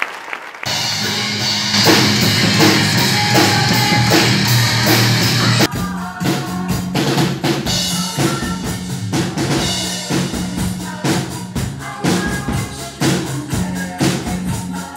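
Band music with a drum kit keeping a steady beat over held bass notes. It comes in abruptly about half a second in and changes to a sparser section a little before halfway.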